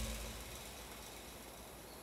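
Faint, steady outdoor background: an even low hiss. At the start, the tail of a louder sound from just before dies away over the first half second.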